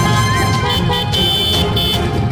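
Motorcycles running past at parade pace, with a horn sounding in several short toots through the second half, over background music.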